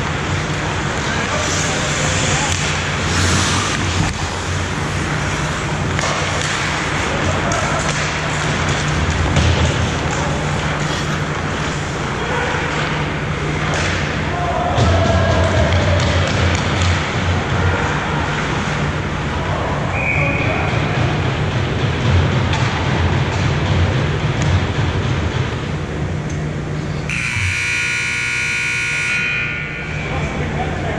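Hockey rink ambience: skates on ice, stick and puck noise and distant players' shouts over a steady low hum. About three seconds before the end, a loud scoreboard horn sounds for about two seconds and then cuts off, marking the end of play.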